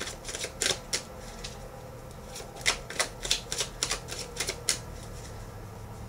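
A tarot deck being shuffled and handled: an irregular run of light, sharp card clicks and snaps, with a pause between two clusters.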